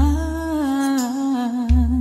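A Filipino pop love ballad: a voice holds long notes with vibrato over backing music with deep bass notes.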